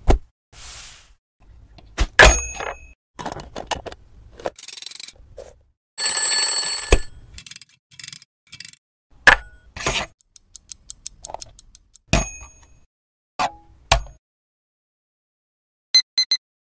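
Stop-motion foley of small objects being handled: scattered clicks, knocks and short rustles. A bell-like ring lasts about a second, starting about six seconds in. Just after that comes a fast run of even ticks as a stainless-steel wind-up egg timer is twisted.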